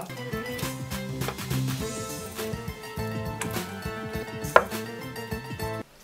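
Wooden spoon stirring a sticky, wet yeast dough in a glass bowl: irregular knocks of the spoon against the glass, with one sharper knock about four and a half seconds in, over quiet guitar music.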